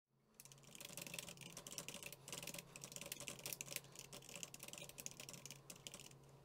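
Faint, fast typing on a computer keyboard: an uneven run of key clicks that starts about half a second in and stops near the end.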